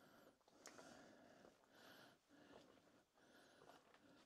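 Near silence: faint room tone with a few soft, brief noises.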